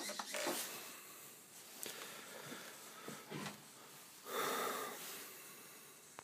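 Quiet room sound with a few faint clicks, and a breath near the microphone lasting about a second, starting about four seconds in.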